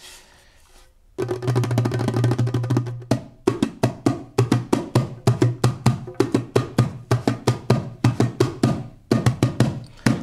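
Djembe played with the hands: after about a second of quiet, a fast roll lasting about two seconds, then a steady beat of sharp strikes, several a second, with a brief pause near the end.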